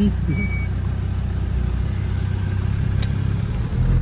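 A 4x4's engine running steadily while driving off at low speed, heard from inside the cab as a low rumble.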